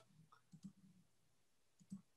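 Near silence with a few faint computer clicks: two close together about half a second in and one near the end, as a screen share is being started.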